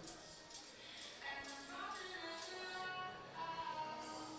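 Faint background music with held melodic notes.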